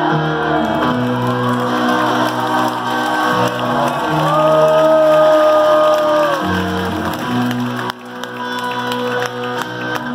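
Live rock band playing an instrumental passage: amplified instruments holding chords that change every second or two, with a long held high note in the middle.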